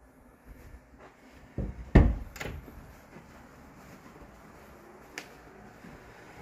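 A few dull knocks and thumps, the loudest about two seconds in, then a single sharp click about five seconds in, over low room background.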